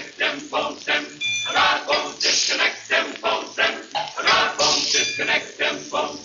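Male glee club singing a choppy, rhythmic passage of short clipped notes, about three a second, played from a 78 rpm shellac record.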